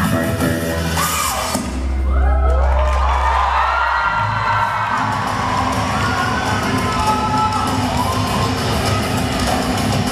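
Recorded dance music with a deep bass swell about two seconds in, then an audience cheering and whooping loudly over it for the rest of the stretch.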